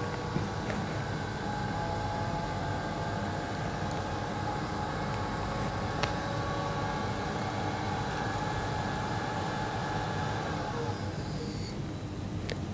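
Grundfos CR3-10 vertical multistage pump with permanent-magnet motor running alone with a steady whine over a low hum. The whine stops near the end as the last pump switches off at zero water demand, leaving the booster set in standby.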